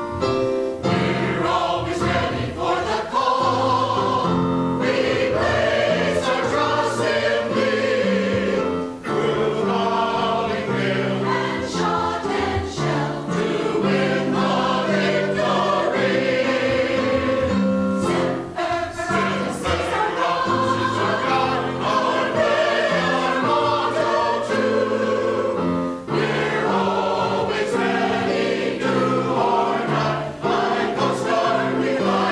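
Mixed choir of men's and women's voices singing together, continuous phrases with brief breaks between them.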